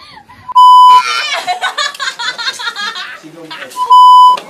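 Two short, loud, steady beeps, about half a second each, of the broadcast test tone that goes with TV colour bars, edited in as a comic cut; between them, young women talking excitedly and laughing.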